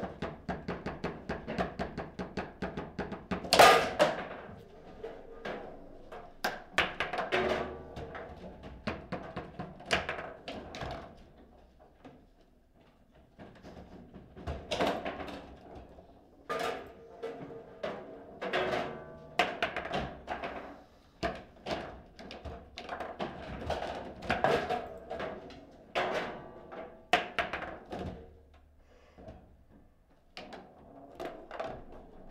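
Foosball table in play: the hard ball knocks against the plastic men, rods and side walls, with a rapid run of taps at the start and the loudest hard hit about four seconds in. The knocks come in irregular flurries, with a short lull about twelve seconds in.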